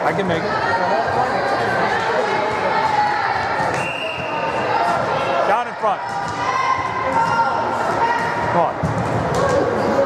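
Spectators' voices chattering in a large echoing gym, with the thuds of a volleyball being hit during play. A short steady referee's whistle blast sounds about four seconds in.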